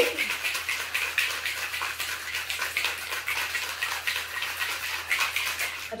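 Ice cubes rattling hard inside a rose-gold metal cocktail shaker, shaken vigorously in a rapid, steady rhythm to chill and mix a cocktail.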